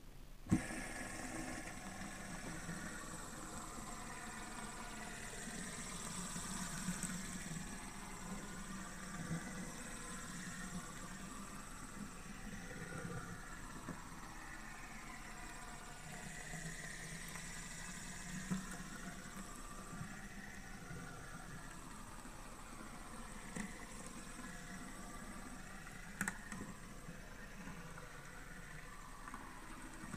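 Metal fidget spinner whirring as it spins flat on a glass tabletop, kept going by finger flicks. A sharp click comes about half a second in, with a few smaller clicks later.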